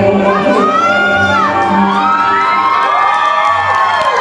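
Audience cheering, with high, gliding screams and whoops at the end of a song, over the last held chord of the music as it fades.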